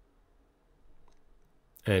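Near silence: quiet room tone with one faint click about a second in, then a man's voice starting near the end.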